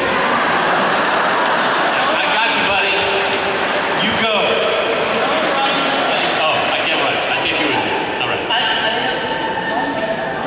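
Several voices talking over one another, amid the steady noise of a crowd in a large hall.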